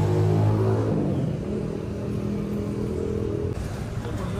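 A motor vehicle's engine running close by in street traffic. It is loudest in the first second, then eases into a steadier, softer hum.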